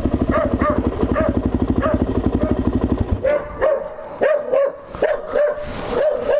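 Suzuki LT-Z 400 quad's single-cylinder four-stroke engine idling, then stopping abruptly about three seconds in. A dog barks repeatedly throughout, heard alone once the engine is off.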